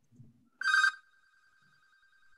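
A telephone ringing: a loud burst of ringtone about half a second in, then a fainter trilling tone at the same pitch that carries on to the end.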